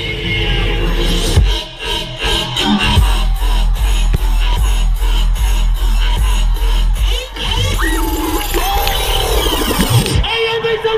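Loud dubstep played over a festival sound system, heard from inside the crowd: heavy, rhythmic bass with a short break about one and a half seconds in and another about seven seconds in.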